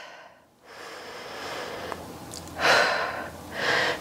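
A woman breathing deeply: a slow, quiet inhale through the nose, then a louder exhale out through the mouth starting about two and a half seconds in.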